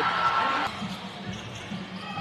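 Basketball game arena sound: crowd noise with a ball being dribbled on a hardwood court, getting quieter after the first half-second.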